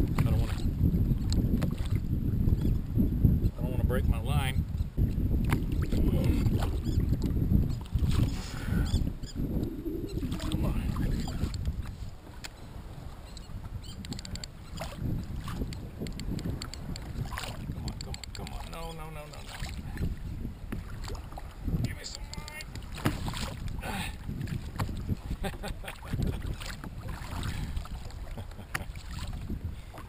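Wind buffeting a kayak-mounted camera microphone at sea, with water lapping against the kayak hull and occasional small knocks; the rumble is heaviest for about the first twelve seconds, then eases.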